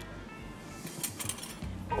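Soft background music, with a few light scrapes of a utensil about a second in as grated lemon zest is added to a bowl of creamed butter and sugar.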